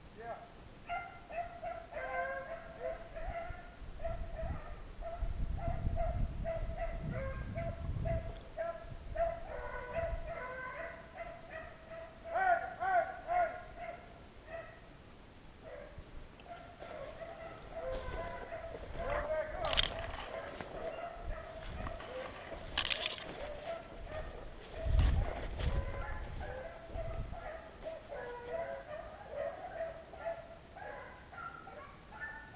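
Hunting hounds baying at a distance, a near-continuous chorus of drawn-out calls that drops away briefly past the middle. Dry brush crackles close by in the second half, with low rumbles of footsteps or wind on the microphone.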